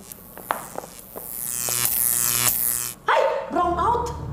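A whooshing sound effect swells for about three seconds, with sweeps falling in pitch and a few faint knocks, then stops abruptly. Right after comes a sudden loud cry that rises in pitch.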